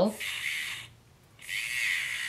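Small battery-powered nail drill buzzing with a white filing bit against a fingernail, filing the natural nail but barely touching leftover gel. The buzz cuts out for about half a second near the middle, then comes back.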